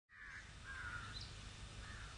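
Bird calls: three short calls, the last running on past the end, with a brief higher chirp about a second in, over a low steady outdoor rumble.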